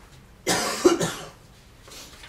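A person coughing once, loud and harsh, about half a second in.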